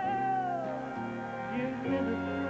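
A woman's singing voice holding a long note with vibrato that bends down and ends well before the middle, over an instrumental ballad accompaniment that keeps playing.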